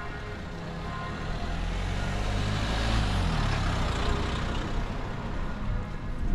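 A motor vehicle driving past on the road, its engine and tyre noise growing louder to a peak about halfway through and then fading away.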